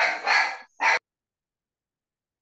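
Two short, harsh animal calls within the first second, heard through a video-call microphone, then silence.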